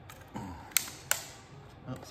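Two sharp plastic clicks, about a third of a second apart, from the hard case of a bike phone mount being handled and opened, after a brief muffled sound.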